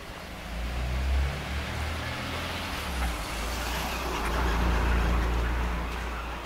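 A car driving past, its tyre and engine noise swelling to a peak about four to five seconds in and then fading, over a low rumble on the microphone.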